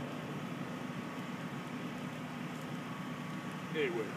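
Steady low background hum, with one short gliding voice-like sound near the end.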